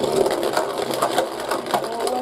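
Two Beyblade Burst spinning tops, Z Achilles and Winning Valkyrie, whirring and grinding on the floor of a plastic Beyblade stadium just after launch. The sound is a dense, steady rattle with many small clicks.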